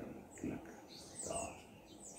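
A man's sermon voice, speaking sparsely, over faint, short, high-pitched bird chirps in the background.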